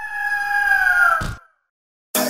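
A single long bird cry, a sound effect over the crowned-eagle logo, drawn out for about a second and a half and falling slightly in pitch.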